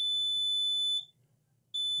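Multimeter continuity beeper giving a steady high-pitched beep, the sign of a short between the points the probes touch on the laptop motherboard's power rail. It breaks off about a second in and sounds again near the end.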